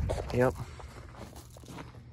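A man's brief 'yep', then faint crunching footsteps on gravel as he walks, with small clicks of the phone being handled.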